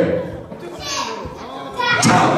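A hall full of children chattering and calling out in a lull between game calls, with a man's amplified voice cutting back in just before the end.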